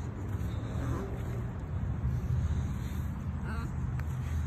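Steady low engine-like rumble in the background, with two brief faint squeaks about a second in and near the end.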